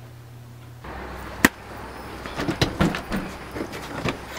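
A low steady hum that drops away about a second in, then a single sharp click and a run of scattered knocks and rustles of a camera being handled.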